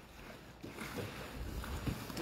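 Faint handling noise of cardboard boxes being shifted and pulled off a pallet stack, with a few soft knocks over a low rumble.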